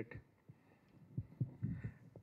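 A few dull, low thumps from a handheld microphone being handled and lowered, starting about a second in, against a quiet room.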